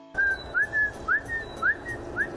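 A small bird calling: short, clear whistled notes, a rising one followed by a level one, repeated about twice a second over light outdoor background noise.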